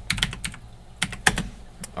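Computer keyboard keystrokes typing an IP address into a command line: a quick run of key clicks at the start, then a few single presses spaced apart.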